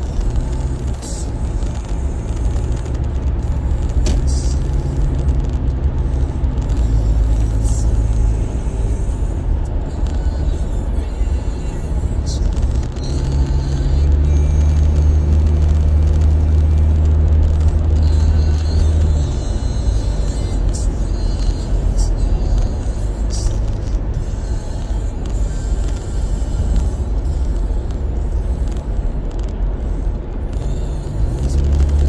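Car cabin noise while driving at highway speed: steady low engine and tyre rumble, swelling louder for several seconds about halfway through.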